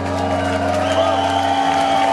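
A rock band's last chord ringing out at the end of a song, while the audience begins to cheer and whoop with whistles. The low bass note drops away about a second and a half in.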